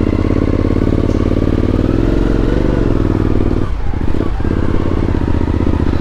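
Suzuki V-Strom motorcycle engine running as the bike rides off at low speed through town. Its note rises and falls a little in the middle, with two short drops in engine sound shortly after.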